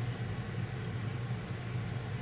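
A pause in speech, filled with a steady low hum and an even background hiss of room tone.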